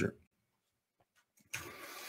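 Mostly near silence after the end of a spoken word, then a soft breathy rush lasting under a second near the end: a man drawing breath at a close microphone before speaking again.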